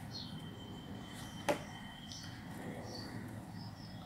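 Quiet room tone with one sharp click about a second and a half in, and a few faint high chirps.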